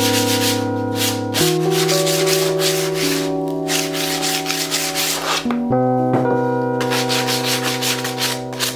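Sandpaper rubbed over a thin sheet of balsa wood in quick back-and-forth strokes, about three a second. The strokes pause for a few seconds midway and start again near the end, over background music with long held chords.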